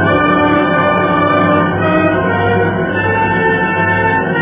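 Orchestral music with long held notes.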